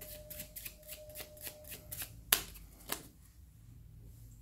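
A deck of playing cards being shuffled by hand: a quick run of soft card clicks for about two seconds, then two sharper snaps.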